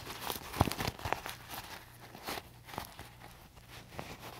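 Plastic candy-bag pouch laminated with iron-on vinyl crinkling and crackling irregularly as it is worked by hand and turned right side out.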